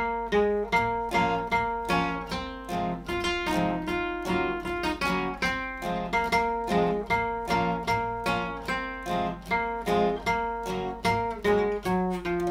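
Two acoustic guitars played together, a steel-string and a nylon-string classical guitar, plucking notes and chords in a steady rhythm of about three strokes a second. A beginner plays along with his teacher.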